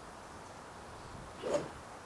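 Golf driver swung through at a teed ball: one short, soft sound at the bottom of the swing about one and a half seconds in, over a faint steady background.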